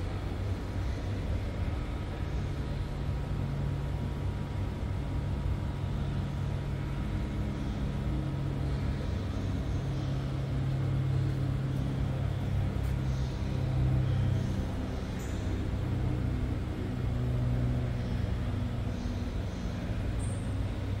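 Steady low rumble with a faint hum, swelling slightly in the middle: the background noise of a large exhibition hangar.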